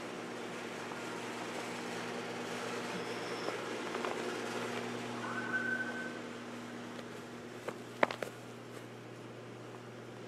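A steady low mechanical hum, like an engine or machine running, louder in the first half. A brief high tone comes about five and a half seconds in, and a few sharp clicks about eight seconds in.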